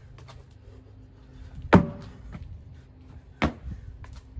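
Thuds of a burpee done with a car tyre: a sharp thud a little under two seconds in and another about a second and a half later, with a few lighter knocks and scuffs between.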